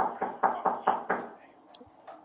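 A fist knocking rapidly on a motel room door: a quick, even run of about six knocks, a little over four a second, that stops about a second and a half in.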